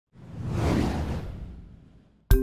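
A deep whoosh sound effect for a logo animation. It swells up from silence within about half a second, then fades away over the next second.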